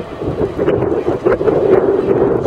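Wind buffeting the microphone: a loud, uneven rumble that rises and falls.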